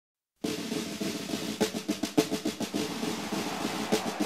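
Snare drum playing a rapid roll with accented strokes, starting suddenly about half a second in, as the drum opening of a recorded song.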